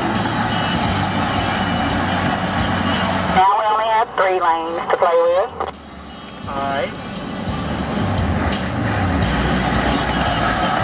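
Steady road noise inside a car's cabin at highway speed. A few seconds in, the noise drops away and a short stretch of a person's voice, sung or spoken, comes through, then the road noise builds back.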